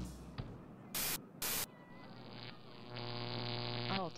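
Television static sound effect: two short bursts of white-noise hiss, then a steady electrical buzz with many overtones that grows louder about three seconds in, like an old TV set switching on.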